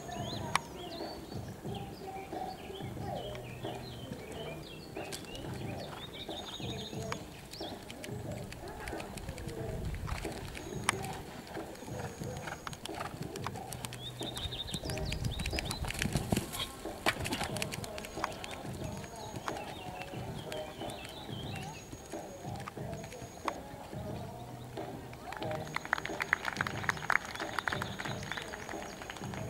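Open-air ambience of bird calls, with a dove cooing repeatedly, over faint background music and distant voices. A run of sharp ticks comes near the end.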